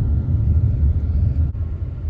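Road noise inside a moving car: a steady low rumble of engine and tyres, with a brief dip about one and a half seconds in.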